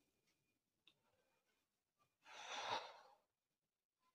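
A person blowing out a long breath of cigarette smoke, about a second long, a little after two seconds in; otherwise near silence with a faint click just before a second in.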